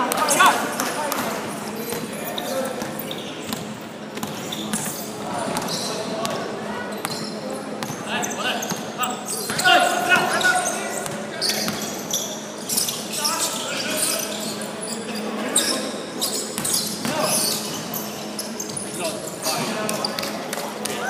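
Basketball being dribbled and bounced on a hardwood court, with players' voices calling out, echoing in a large sports hall.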